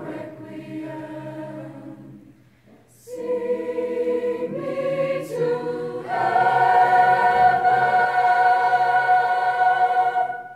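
Mixed choir of female and male voices singing; the phrase dies away briefly about two and a half seconds in, resumes, then swells into a loud, held chord for the last four seconds.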